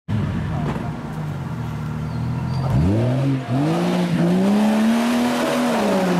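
Jeep Cherokee XJ engine running steadily at low revs, then revved up under load about three seconds in: a short rise, then a long climb that holds and starts to fall away near the end, as the 4x4 crawls up a muddy off-road slope.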